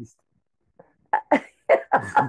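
An elderly woman laughing in short bursts, starting after a brief pause, with about four quick bursts in the second half.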